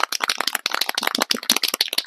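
Aerosol can of matte clear acrylic coating being shaken, its mixing ball rattling in a quick, unbroken run of clicks to mix the coating before spraying.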